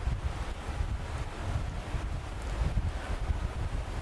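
Steady low rumble with a faint hiss, like air moving across a microphone: background noise in a pause with no speech.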